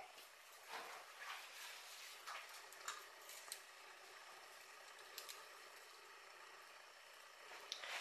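Near silence, with faint rustling and a few soft taps in the first three or four seconds as a plastic skeleton tree topper is handled onto an artificial tree.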